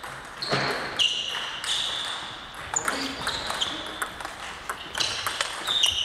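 Celluloid-style table tennis balls clicking off bats and tables at irregular intervals, each hit followed by a short high ring and echoing in a large sports hall; a rally gets going near the end.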